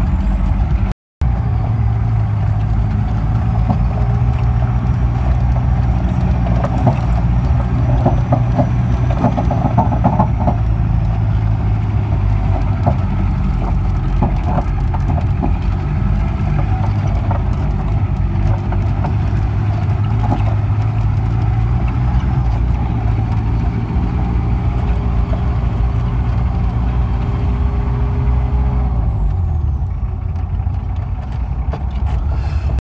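Jeep engine running steadily under load as it climbs a rough dirt track, with scattered knocks and rattles from the bumps, thickest about a third of the way in. The sound cuts out for a moment about a second in.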